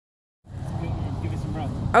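Steady low rumble of outdoor background noise on a phone microphone, starting about half a second in, with a faint voice near the end and speech beginning as it closes.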